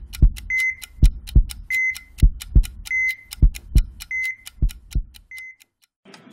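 Heartbeat sound effect: a double thump, lub-dub, about every 1.2 seconds, with a short high beep between beats. It stops about half a second before the end.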